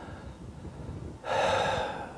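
A man's short audible intake of breath, lasting about half a second, starting about a second in after quiet room tone.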